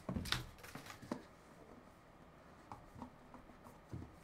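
A few soft knocks and scrapes in the first second or so as hands handle a cardboard trading-card box, then a few faint ticks.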